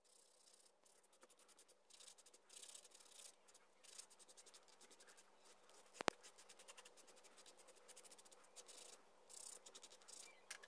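Sanding stick rubbing a small scroll-sawn wooden part by hand, in runs of quick, faint back-and-forth strokes. A single sharp click about six seconds in is the loudest sound.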